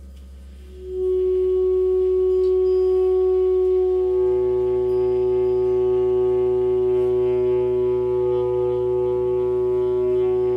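Improvised music for saxophone and metal percussion (gongs, cymbals): a loud, steady sustained tone enters about a second in and is held, with further ringing overtones and a lower drone joining about four seconds in.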